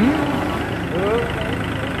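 Kubota compact tractor's diesel engine running steadily at low revs, with an even low rhythm throughout.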